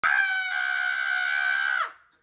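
A long, high-pitched scream held on one pitch for nearly two seconds, sliding down and cutting off at the end.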